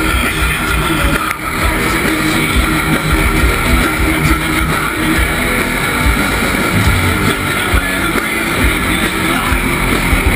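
A heavy metal band playing live at full volume: distorted electric guitars and drums in one dense wall of sound, heard close to the stage through a small action camera's microphone, with a heavy rumbling low end.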